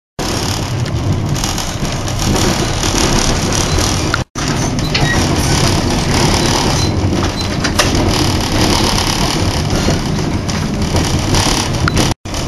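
Steady rumble and hiss of a moving passenger train heard from inside the carriage, cutting out briefly about four seconds in.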